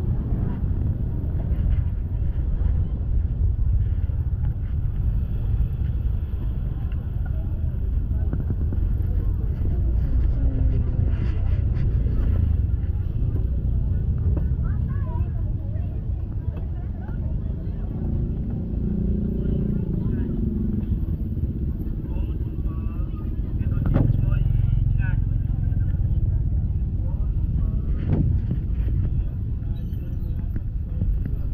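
Busy open-air market ambience: a steady low rumble of motorbike engines, with people talking in the background.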